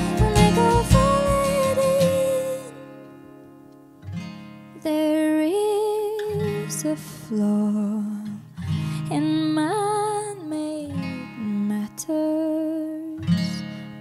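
Live acoustic music: a woman singing a slow melody with gliding pitch over strummed and plucked acoustic guitars. The opening chords die down to a brief lull about three seconds in before the voice and guitars come back.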